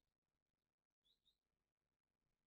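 Near silence: the recording is essentially empty, with no audible sound.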